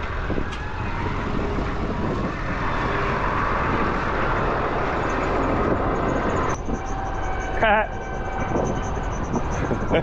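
Tractor engine running steadily under load as it hauls a loaded muck spreader through a waterlogged field, with a short wavering call about three quarters of the way through.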